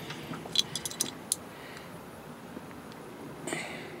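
A few light, sharp metallic clicks as a spark plug's ground electrode is bent back down by hand, then only a faint steady background hiss.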